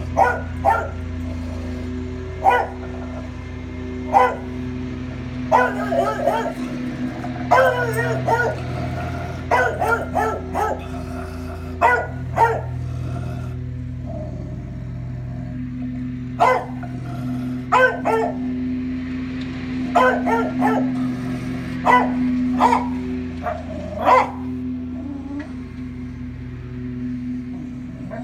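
A beagle barking repeatedly at the window, sharp barks every second or two with some drawn-out, wavering bays. Under it, a lawnmower engine runs with a steady low hum.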